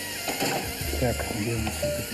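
Mostly speech, with a few short clicks or ratcheting sounds.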